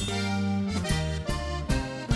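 Live norteño band music led by a Cantabella Rústica diatonic button accordion over electric bass and drums, in an instrumental passage. The whole band comes back in sharply at the start after a brief stop.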